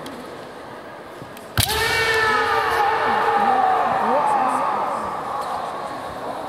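A sharp strike cracks about one and a half seconds in: a kendo shinai blow with the stamp of the attacking foot. A long shouted kiai follows for about three seconds, sliding slowly down in pitch.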